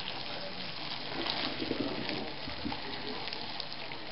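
Hot brine pouring in a thin stream from a pot onto chopped cabbage in an enamel pot: a steady splashing trickle of liquid.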